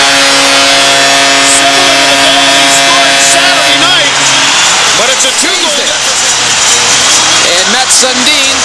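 Hockey arena goal horn sounding one steady held chord over a loudly cheering crowd, signalling a home-team goal. The horn cuts off about four and a half seconds in, leaving the crowd cheering and shouting.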